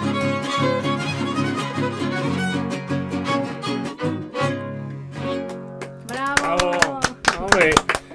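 A trío huasteco, with violin over jarana huasteca and huapanguera, playing the last bars of a huapango; the music stops about six seconds in. Clapping and cheering voices follow as it ends.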